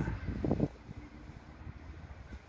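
The last of a man's words in the first moment, then faint, low wind rumble on the microphone.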